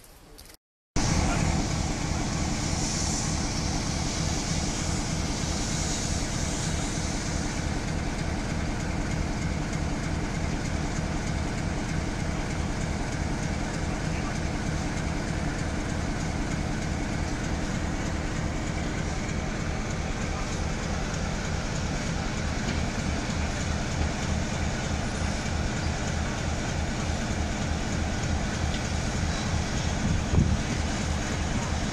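GWR Manor class steam locomotives at a station platform: a loud steady hiss of steam over a low rumble, the hiss strongest in the first few seconds after it starts about a second in.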